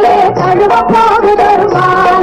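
A 1960s Tamil film song playing: a melodic line that moves in pitch over a steady percussion beat.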